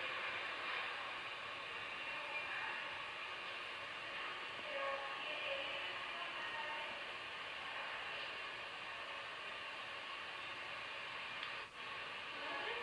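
A steady hiss-like noise with no clear pitch, holding level and dropping out for a moment near the end.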